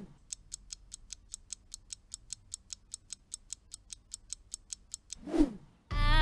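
Quiz countdown-timer sound effect: a clock ticking about five times a second. There is a short swish at the start and another just before the end.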